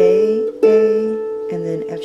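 Harp strings plucked one note at a time in a slow melody, each note ringing on under the next, while a voice names the notes.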